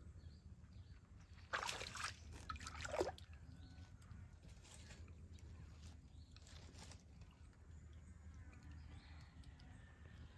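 Shallow muddy water sloshing in a few short bursts as a Komodo dragon steps through it, loudest between about one and a half and three seconds in, over a faint steady low rumble.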